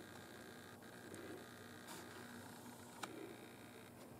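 Near silence: quiet room tone, with a faint click about three seconds in.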